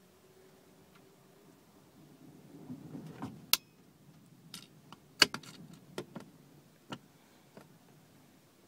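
Sharp plastic clicks and snaps from a fibre-optic cleaver and fibre holder as their clamps and lids are opened and shut while an optical fibre is loaded, about half a dozen clicks with light handling rustle before them.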